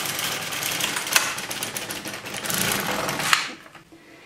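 Silver Reed LK150 knitting machine carriage pushed across the plastic needle bed to knit one row: a steady clattering rattle with a couple of sharp clicks. It stops about three and a half seconds in.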